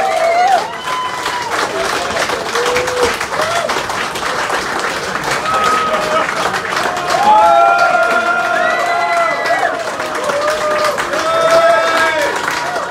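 Concert audience clapping steadily, with shouts and drawn-out calls rising over the applause, calling for an encore.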